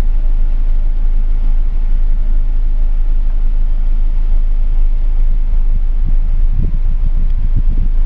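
Steady low rumble of a car heard from inside the cabin, with a few soft bumps near the end.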